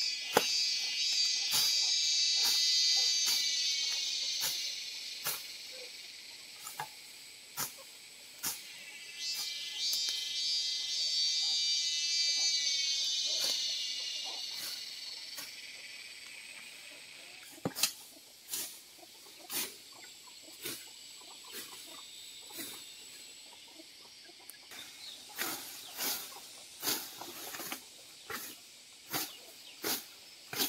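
Insects, most likely cicadas, buzzing in two long swells that build and then fade away. Under them run irregular sharp snaps and clicks from undergrowth being cut and pulled by hand, coming more often near the end.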